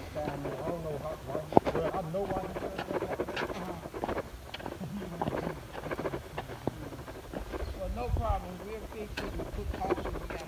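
Faint, indistinct voices talking in the background, with a few short clicks and knocks, the sharpest about one and a half seconds in.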